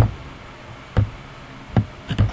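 Three dull knocks about a second apart, over a faint steady hiss.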